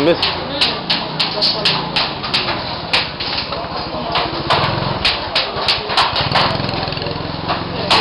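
Irregular sharp hammer taps on metal, a few a second, over the chatter of a busy market street, with a small engine humming low underneath for the second half.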